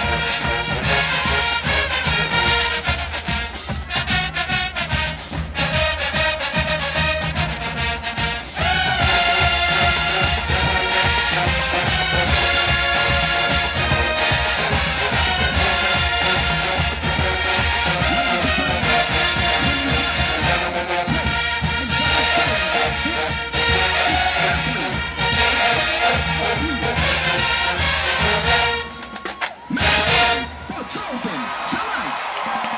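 HBCU show-style marching band playing a brass-led tune, with a short break in the music just before the end.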